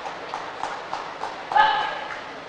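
Badminton hall between rallies: light taps about three a second, then a loud, brief, steady squeal near the end, typical of a court shoe squeaking on the synthetic court floor.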